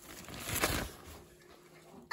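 Rustling of a shiny fabric play-tent door flap as it is pushed aside and brushes past the microphone, loudest about half a second in, then fading.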